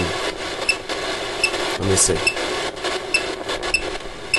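Static-like hiss and crackle from a ghost-hunting phone app. Faint high blips come through it every half second to second.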